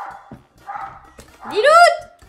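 A dog barks once, a single loud bark near the end, shortly after a woman calls its name.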